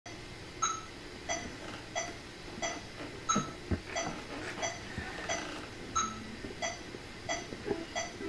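Metronome clicking steadily at about 90 beats a minute, a little under one and a half clicks a second, with a stronger click on every fourth beat, counting in the practice tempo. A couple of faint low knocks sound in the middle.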